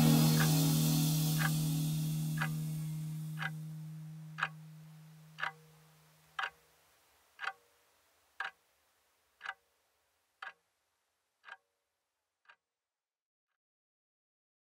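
The last held chord of a heavy rock song dies away over about six seconds while a clock ticks steadily, once a second. The ticks fade and stop about twelve and a half seconds in.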